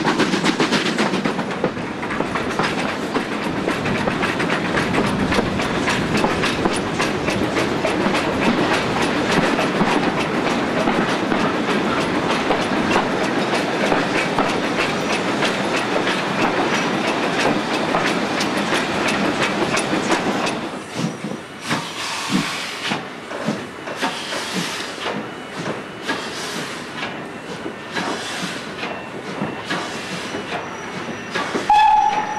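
Train running, heard from an open carriage window: wheels clattering steadily over rail joints. About 20 seconds in the noise drops, and the clatter thins to separate knocks as the train slows into a station.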